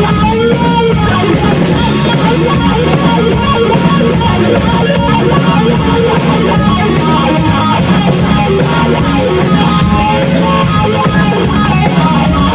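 A live rock band playing loudly and steadily: electric guitar from a Les Paul-style guitar over bass guitar and a drum kit.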